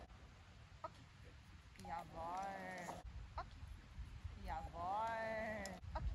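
Two drawn-out animal calls, each about a second long, rising and then falling in pitch, a few seconds apart.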